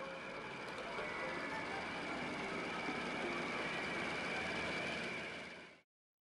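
Steady vehicle-like mechanical noise with a faint steady high whine, fading out about five and a half seconds in.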